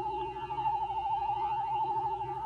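Sphero BB-8 app's connection-screen sound playing from a tablet's speaker: a steady electronic tone with a fast warble, with a lower warbling tone beneath it.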